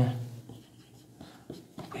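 Whiteboard marker writing on a whiteboard: a few faint short strokes and taps of the felt tip on the board.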